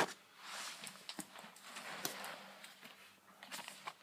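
Quiet handling noises: two or three soft rustles and a few light clicks as paper and cardboard packaging are moved about.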